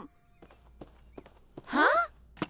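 A cartoon girl's short, breathy voiced sound rising in pitch near the end, a surprised gasp-like reaction. Before it there are only a few faint light taps.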